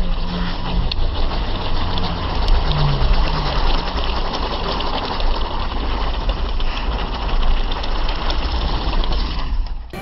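A spinning ground firework hissing and crackling in a dense, fast, steady stream, with a low rumble under it. It stops just before the end.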